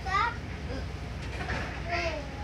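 Children's high-pitched voices, with a rising call at the start and another near the end, over the steady low rumble of a moving passenger train.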